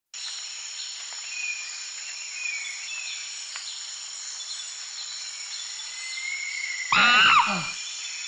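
Steady high-pitched insect chorus with a few short whistling calls over it. About seven seconds in, a man's voice shouts "Oh!" loudly.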